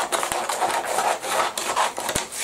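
Scissors cutting through a sheet of tracing paper held off a roll: a steady rasping of the blades through the paper.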